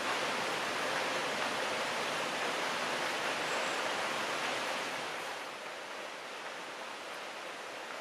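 Steady rushing background hiss with no distinct events, easing a little about five seconds in.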